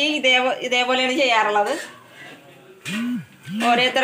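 A woman's voice for the first couple of seconds, in drawn-out pitched phrases, then a brief lull broken by two short low hummed tones before the voice picks up again near the end.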